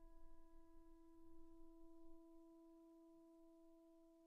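Faint digital piano note left sustaining and slowly dying away: one steady pitch with its overtones, the rest of the chord having already faded.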